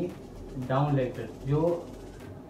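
A man's voice making two short wordless vocal sounds, about half a second apart, low-pitched and drawn out.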